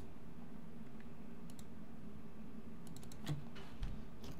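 A few faint computer clicks, a handful of short taps about a second and a half in and again near the end, over a steady low hum of room tone.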